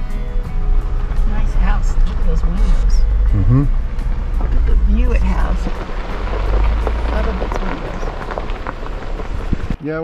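Jeep Gladiator driving slowly on a gravel ranch road: a steady low rumble with a haze of tyre noise, and a few brief snatches of voice or music over it. The rumble cuts off suddenly near the end.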